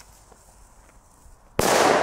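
A firecracker going off: one sharp, loud bang about a second and a half in, trailing off afterwards.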